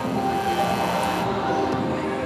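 Music with sustained tones playing over a hall's sound system, and a hissing noise through about the first second that cuts off suddenly.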